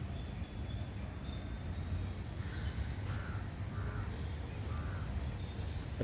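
Outdoor ambience: a run of about five short, faint bird calls in the middle, over a steady high insect drone and a low rumble.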